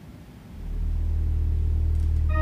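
Church organ sounding a deep, low pedal note that enters about half a second in and is held steadily, opening the postlude.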